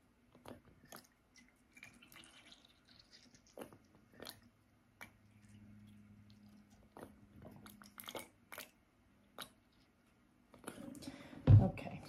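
Scattered small clicks, taps and crackles of a plastic wash bottle being squeezed as sugar water is squirted into plastic fecal sample tubes. Near the end comes a louder stretch of handling noise with one sharp thump.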